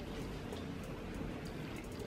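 Quiet room tone with a few faint, small clicks.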